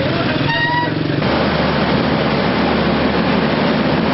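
Street traffic at a level crossing: an engine runs close by, and a short high-pitched toot like a vehicle horn sounds about half a second in. At about a second in, the sound cuts to a steady rumble and hiss of passing traffic.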